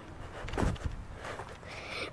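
A person landing from a short jump onto dirt ground: a thump about half a second in, with the handheld camera jostled by the landing.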